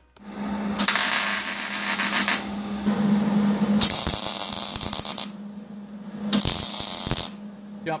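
Grizzly drill press running with a steady hum, its bit cutting into steel angle iron in three loud, noisy spells of one to two seconds each.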